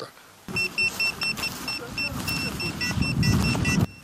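A series of short, high-pitched electronic beeps, repeating a few times a second and quickening near the end, over a low background mix.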